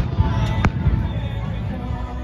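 Aerial firework shells bursting: two sharp bangs, one at the very start and another about two-thirds of a second in.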